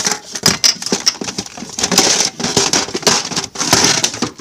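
Loud rustling, crackling and quick knocks of handling close to a phone's microphone while things are rummaged through in a search.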